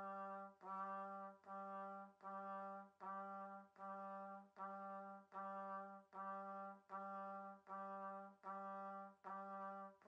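Trumpet playing one low note over and over, quietly, about four notes every three seconds, each note detached from the next. It is an orchestral second-trumpet part, which is hard because it is so low and so quiet.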